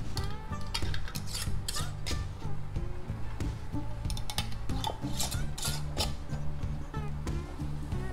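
Metal canning lids and screw bands being put on and turned onto glass mason jars: irregular scraping and light clicks of metal on glass, over soft background music.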